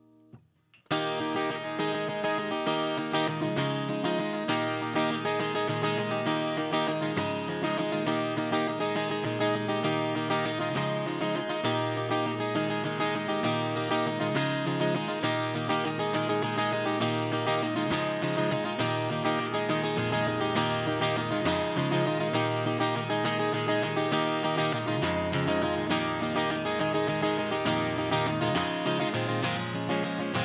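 Hollow-body archtop electric guitar played solo through an amplifier, strummed in a steady rhythm with ringing chords. It begins about a second in, after a brief hush.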